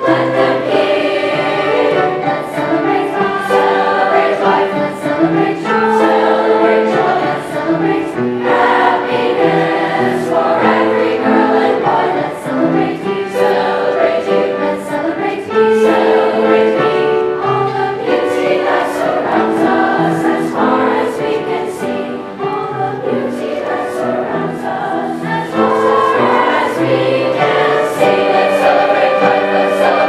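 Seventh-grade mixed choir of girls and boys singing a song with piano accompaniment.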